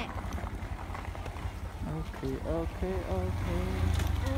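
Low steady rumble of a moving vehicle with wind on the microphone. People's voices call out briefly about halfway through.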